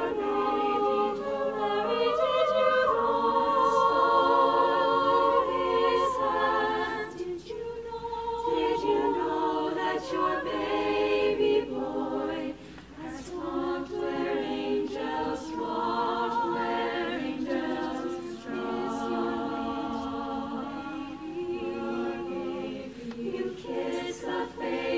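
Women's choir singing a cappella in sustained chords with vibrato, with a brief pause for breath about twelve seconds in.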